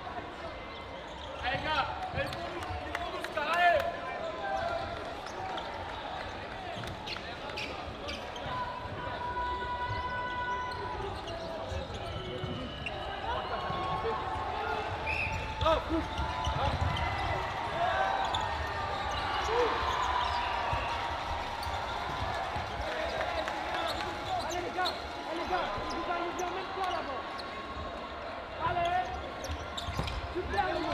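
Indoor sports hall during a dodgeball match: several sharp ball impacts in the first few seconds, then sneakers squeaking on the wooden floor with players' voices calling out.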